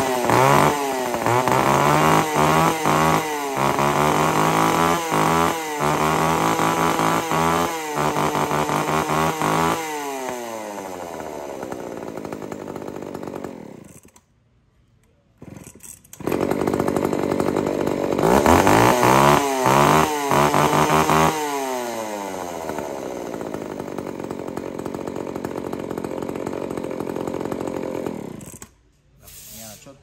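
Kioritz ECHO 302 two-stroke chainsaw on a test run: the throttle is blipped again and again, then the engine drops to idle and stops about 14 seconds in. A couple of seconds later it is pull-started again, revved high, left to idle, and stops just before the end.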